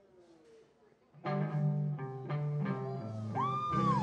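A live Motown-style soul band strikes up about a second in, playing a held, bass-heavy chord with plucked notes over it. Near the end a high note slides up, holds and drops away.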